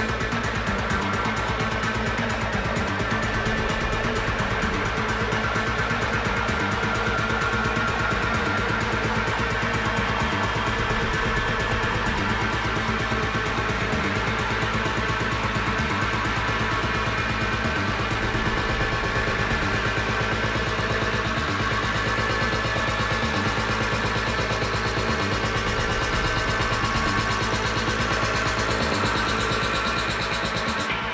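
Techno DJ mix playing continuously, driven by a steady, evenly repeating kick-drum beat with layered synth tones above it.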